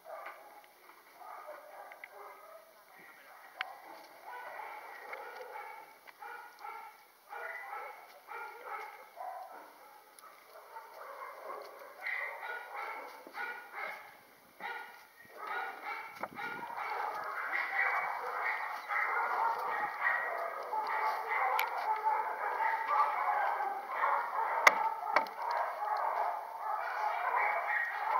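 Dogs barking in the distance, many short barks overlapping. The barking is sparse at first and grows denser and louder in the second half.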